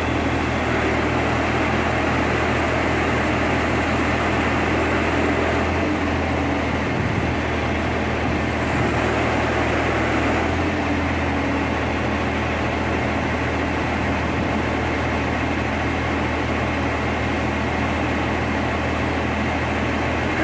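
SANY truck crane's diesel engine running steadily with a low, even hum.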